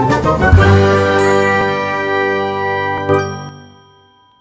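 Short musical logo jingle of bright chiming, ringing tones held together and fading out, with one sharp stroke about three seconds in.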